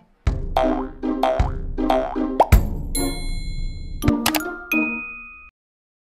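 Short jingle of bouncy, cartoon-like music notes with a sharp hit about two and a half seconds in, followed by bright ringing chime tones that cut off abruptly about five and a half seconds in: an outro logo sting.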